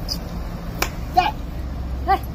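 A single sharp click a little before the middle, then a brief high-pitched call, all over a low steady rumble.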